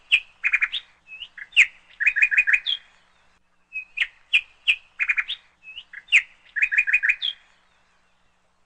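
Bird chirping: sharp chirps and quick trills of short notes. The same sequence plays twice, about four seconds apart, and it stops a little after seven seconds in.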